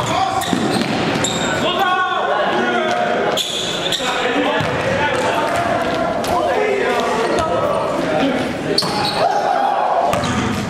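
Live sound of an indoor basketball game in a gymnasium: the ball bouncing on the court, with players' voices calling out, all echoing in the hall.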